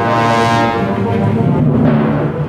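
Full symphony orchestra playing a loud, sustained chordal passage, with a bright swell of sound about half a second in.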